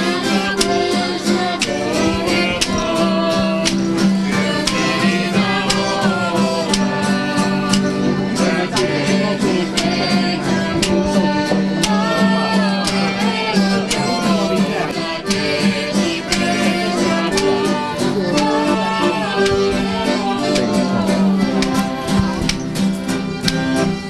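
Live folk music from a small group: an acoustic guitar strummed in a steady rhythm under a harmonica melody.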